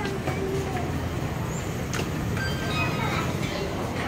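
Busy restaurant dining-room ambience: a steady low rumble with scattered snatches of diners' voices, a sharp click about two seconds in, then a few short high clinks.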